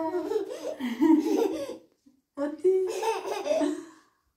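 A toddler laughing in two long stretches, the second starting a little after the middle.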